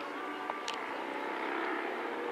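A steady engine drone, with a short sharp click under a second in.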